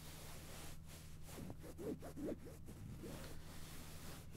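Fabric rustling and rubbing close against the microphone in a few scratchy strokes around the middle, over a steady low hum.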